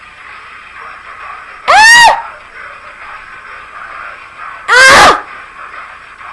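A young woman's high-pitched shrieks of disgust: two short, loud cries about three seconds apart, each rising and then falling in pitch.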